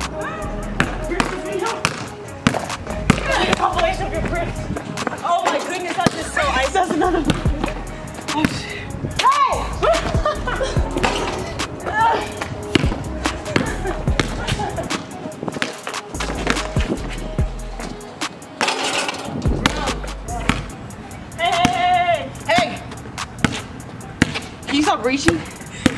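A music track with a deep, repeating bass line plays over a basketball being dribbled on a hard concrete court, with sharp, frequent bounces and knocks.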